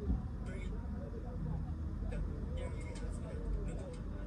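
Street noise heard from inside a parked car: a steady low rumble of traffic with indistinct voices from outside. A few faint high ticks come through in the first three seconds.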